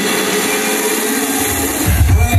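Loud electronic dance music from a live DJ set over a nightclub sound system. For most of the moment the heavy bass is cut out, leaving sustained synth notes; the bass comes back in just before the end.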